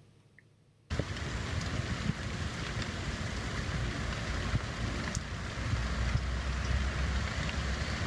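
Rain falling steadily, with a low rumble underneath; it cuts in suddenly about a second in, after near silence.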